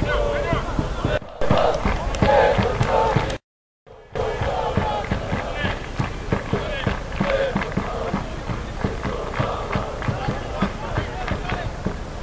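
People's voices shouting and talking over a low wind rumble on the microphone. The sound cuts out completely for about half a second around three and a half seconds in.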